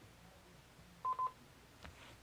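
Two short, quick electronic telephone beeps at one steady pitch, about a second in, on an otherwise quiet line: the signal of a caller's phone line being put through to the studio.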